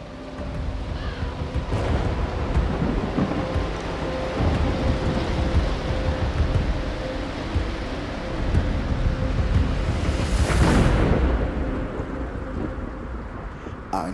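Thunderstorm sound effect: rolling thunder over a steady rain-like hiss, swelling to a louder thunder crack about ten seconds in, with faint held notes underneath.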